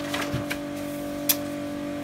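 A steady background hum with a few light clicks and one sharp tick about a second and a half in, as a paper booklet is picked up off a table and handled.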